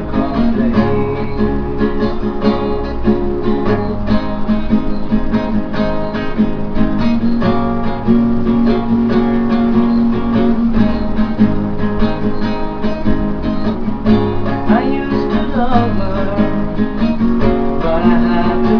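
Acoustic guitar strummed in a steady chord rhythm.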